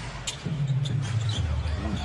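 Basketball dribbled on a hardwood court, a few separate bounces, over steady arena crowd noise.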